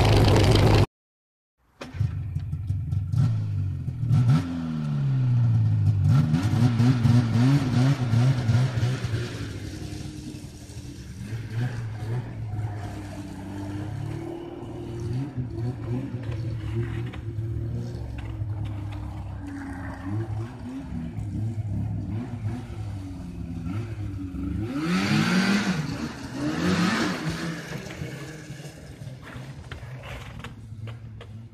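1988 Yamaha Phazer snowmobile's two-stroke engine, loud and steady for the first second, then cut off briefly. After that it is heard from farther off as the sled is ridden around, its pitch rising and falling with the throttle. It is loudest from about two to nine seconds in and again a few seconds before the end.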